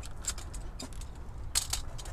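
A few faint light clicks and ticks over a low steady hum, with a small cluster of clicks about a second and a half in.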